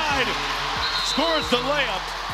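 Basketball game audio in an arena: a steady crowd din with a basketball bouncing on the hardwood court, a couple of sharp bounces standing out.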